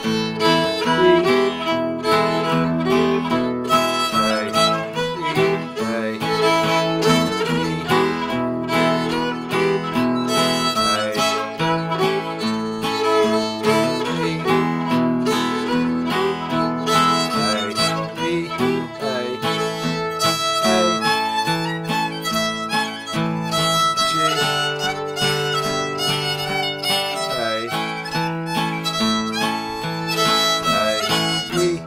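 Fiddle and guitar playing an old-time fiddle tune together at a slow jam tempo, in A modal.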